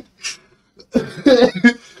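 A man laughing hard in several short, hoarse bursts.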